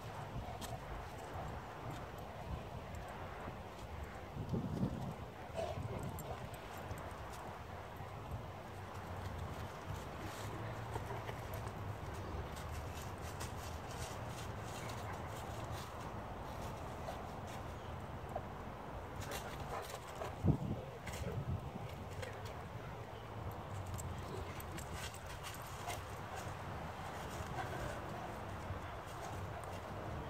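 A Newfoundland dog mouthing and tugging at a log hung on a rope: scattered knocks and clicks of teeth and wood, with two short louder sounds about five seconds and twenty seconds in, over steady low background noise.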